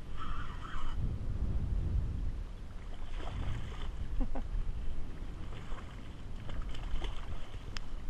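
Wind buffeting the microphone and water washing around a kayak, with irregular splashes and clicks as a hooked fish thrashes at the surface beside the boat.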